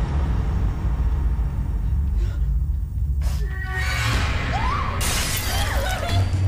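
Horror trailer score: a heavy, steady low drone, with a shattering crash about five seconds in. Brief gliding, voice-like cries rise over it in the second half.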